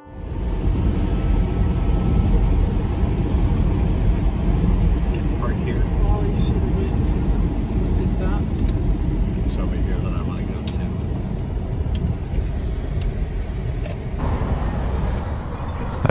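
Car driving along a street, heard from inside the cabin: a steady low rumble of engine and tyre noise.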